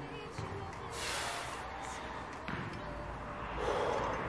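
Feet landing on artificial gym turf during alternating reverse lunges: several soft thumps, roughly a second apart.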